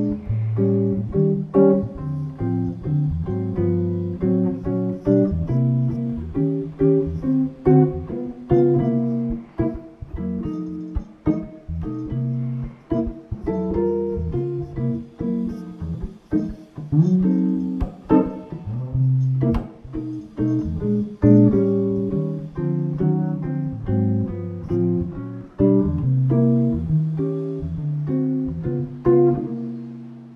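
Gibson archtop hollow-body electric guitar playing a 12-bar blues variation in jazz chords, plucked chord by chord with moving inner lines. It ends on a held chord that rings out and fades.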